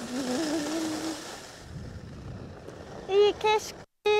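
Skis hiss over packed snow for the first second and a half, under a voice holding a short, wavering sung note. Near the end come two short, loud whoops.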